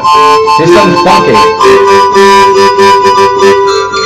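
Acoustic guitar being strummed, with long, steady held notes from a second instrument sounding over it.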